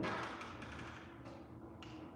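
A sharp tap at the start, followed by faint rustling and a few light scrapes of something being handled.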